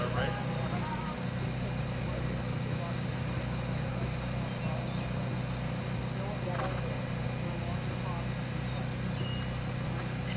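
A steady low hum runs throughout, with faint distant voices now and then.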